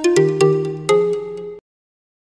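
Short musical logo jingle of a few bright pitched notes that stops abruptly about a second and a half in.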